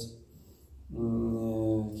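A man's voice holding one steady, drawn-out vowel for about a second after a brief pause: a hesitation sound in his talk.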